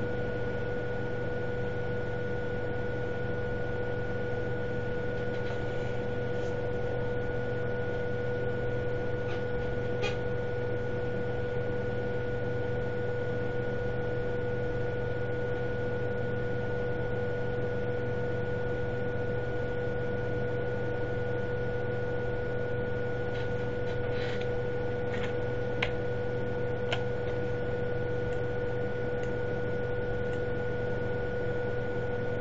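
Steady electrical hum and hiss carrying two faint steady tones, with a few faint clicks, one about a third of the way in and several more in the last third.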